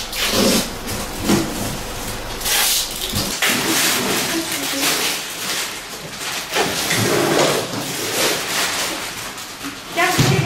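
Plastic bags and wrapping crinkling and rustling as belongings are handled and packed, with young children's voices over it.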